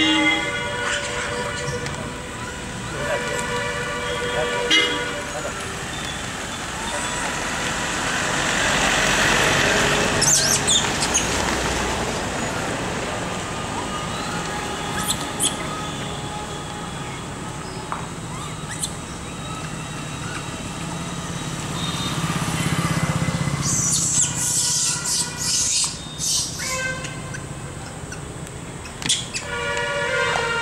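Road traffic passing close by, with vehicle horns honking a few times, flat held tones near the start, a few seconds in and near the end. A vehicle swells past about a third of the way through.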